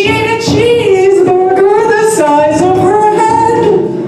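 A woman singing a wordless, wavering melody into a microphone, holding notes and sliding from pitch to pitch.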